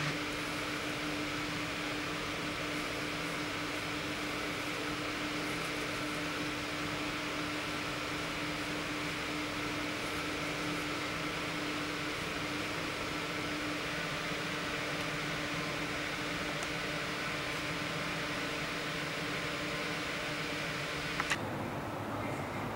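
Steady mechanical hum and hiss, with a low steady tone that drops out about two-thirds of the way through, and a brief click near the end.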